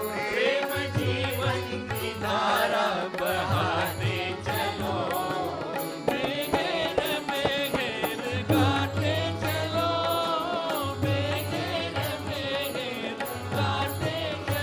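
Indian devotional chanting sung over a steady low drone, with light percussion keeping an even beat.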